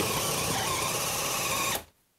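Makita 18V LXT brushless drill/driver boring a 3/4-inch bit into a four-by-four, the motor running and the bit chewing wood, then cutting out abruptly near the end. The drill stops itself under load on speed two, even with barely any pressure on it.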